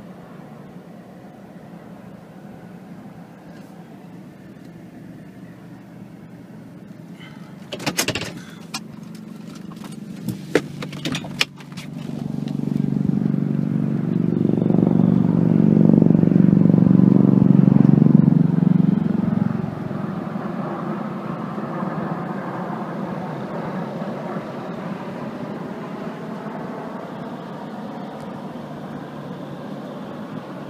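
V-22 Osprey tiltrotor flying past overhead: a low droning rumble that swells from about twelve seconds in, peaks, then drops off sharply near twenty seconds, leaving a fainter drone as it moves away. A few sharp knocks come just before it, about eight to eleven seconds in.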